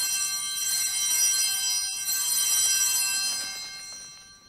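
Small altar (sanctus) bells rung at the elevation of the consecrated bread, marking the consecration. A cluster of bright, high tones rings together and fades away near the end.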